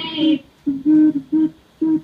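Girls humming a tune in a few short held notes with brief gaps between them, heard over a Skype video call.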